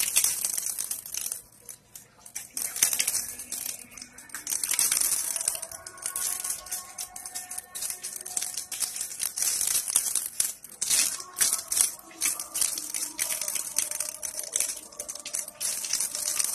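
Water splashing and dripping in irregular bursts as a man washes his hands and face at a tap for ablution. Faint distant chanting sounds behind it from about five seconds in.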